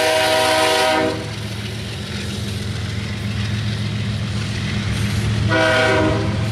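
Diesel freight locomotive horn sounding a steady multi-tone blast that stops about a second in, then a second blast starting near the end. Underneath runs the steady low rumble of the passing freight train.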